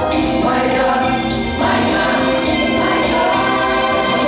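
Gospel choir singing sustained harmonies with a male soloist, over an instrumental backing with a steady bass line.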